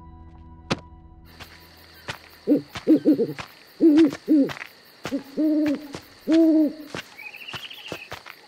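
Owl hooting in a series of calls, four short hoots followed by two longer ones, over a steady background of night insects chirring.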